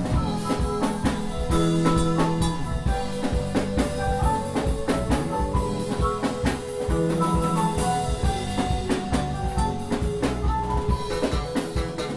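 Live instrumental band music: an electric bass playing a melodic line over a drum kit groove.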